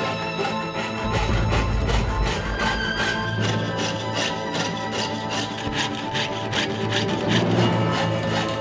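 Jeweler's saw cutting through brass sheet in quick, even back-and-forth strokes, heard under background music.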